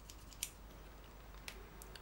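Small scissor blades of a folding slip-joint pocket knife (HX Outdoors EDC 020A) being snipped: a few faint, light clicks, the clearest about half a second in and two weaker ones near the end.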